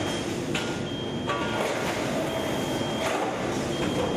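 Rotor aluminium die-casting machine running, with a steady mechanical noise and several sharp clanks as its rotary table indexes to the next station. A thin, high beep-like tone sounds on and off.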